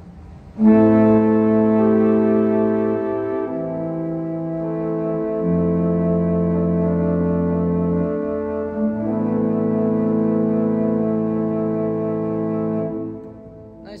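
1926 Estey pipe organ, Opus 2491, playing slow sustained chords on an open diapason stop with the tremolo drawn, so the held notes waver gently. The chords change every second or two and stop about a second before the end.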